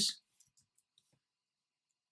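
A few faint computer keyboard keystroke clicks against near silence.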